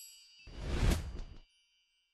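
Title-animation sound effects: a bell-like ding rings out and fades at the start, then a whoosh swells and dies away in the first second and a half, followed by silence.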